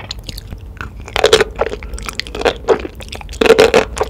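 Chewing and biting of enoki mushrooms coated in spicy black bean sauce: wet, crunchy chews in separate bursts, loudest about three and a half seconds in.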